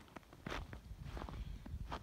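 Footsteps in a few inches of fresh snow: a few uneven steps.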